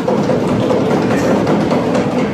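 Many hands beating together in a dense, rapid patter, a round of approval from the house, loud and even throughout.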